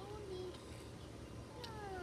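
Two short meow-like calls: a brief one at the start and a longer one falling in pitch near the end.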